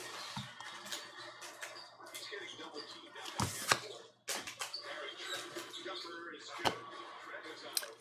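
Hands handling a paper card on a cloth desk mat: scattered light taps, clicks and rustles, with a few sharper knocks about three and a half seconds in and again near the end.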